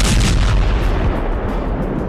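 Artillery fire: a sudden loud blast right at the start, followed by a deep rumble that carries on and slowly eases off.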